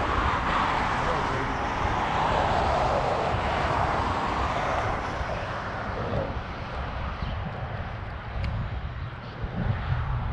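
A passing engine, heard as a rushing noise that swells over the first few seconds and fades away by about six seconds in, over a low rumble on the microphone.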